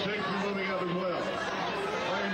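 Only speech: indistinct chatter of people talking over one another.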